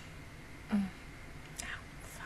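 A woman's brief low murmur close to the microphone, followed near the end by a short breathy whisper.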